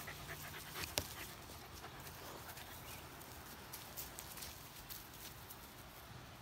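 A small dog panting close by, faint, fading after the first couple of seconds, with one sharp click about a second in.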